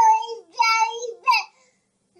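Infant babbling in high-pitched, drawn-out sing-song sounds: two long ones and a short one, then a pause for the last half second.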